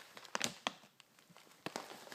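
Mylar bag crinkling as it is handled: a few short crackles about half a second in, and more near the end.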